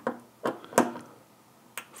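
A 15 inch-pound torque limiter on a hand driver clicking a few times in quick succession as a scope-ring screw is tightened: the limiter breaking over at its set torque. The sharp clicks come less than a second apart, the first two louder.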